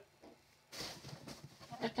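A short breathy intake of air about two-thirds of a second in, followed by faint mouth clicks, then the start of a spoken word near the end.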